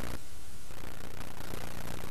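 Steady static hiss with a low hum underneath, even in level throughout.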